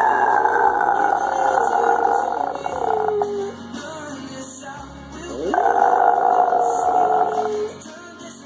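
Yorkshire terrier howling along to a pop song: two long sustained howls, each sliding down in pitch at its end, with a gap of about two seconds between them.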